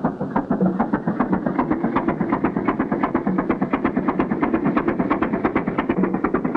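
A boat engine sound effect for an animated fishing boat: a quick, even chugging that holds steady as the boat motors away.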